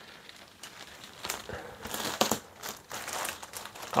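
Plastic wrapping around a rolled memory foam mattress topper crinkling as hands handle and pull at it, in irregular crackles that get busier after about a second.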